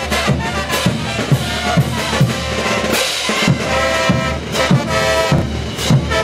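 A Bolivian brass band plays live: bass drum beats about twice a second under cymbal crashes, with brass chords coming in strongly in the second half.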